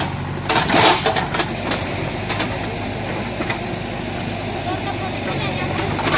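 An engine idling steadily, with a short loud clatter about a second in.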